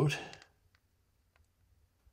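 A man's voice trails off, then near silence with two faint, short clicks a little over half a second apart.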